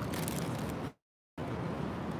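Steady outdoor background noise, heaviest in the low end, with the sound cutting out completely for about a third of a second just after a second in.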